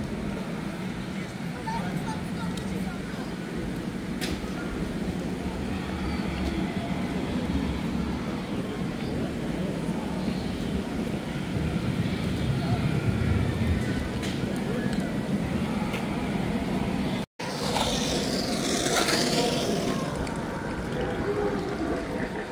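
Outdoor ambience: a steady low hum with a wash of distant people's voices. About seventeen seconds in the sound drops out for a split second.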